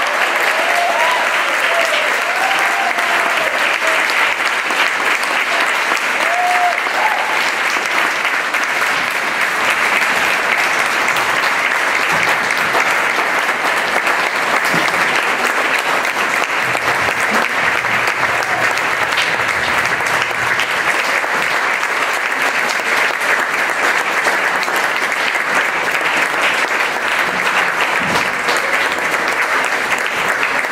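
A large audience applauding at length, a dense, steady clapping that greets the end of a speech.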